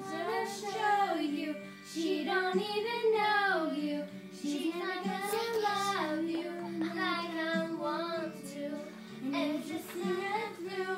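Girls singing along to a karaoke machine's backing track, a held, gliding sung melody over a steady accompaniment.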